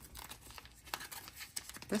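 Sticker sheets being handled and slid into clear plastic binder pockets: faint crinkling and rustling of plastic and paper with a few light clicks.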